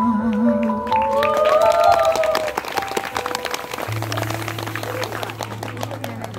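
The last held note of a live band's song, then audience applause with whoops starting about a second in, and a low sustained note held under the clapping in the second half.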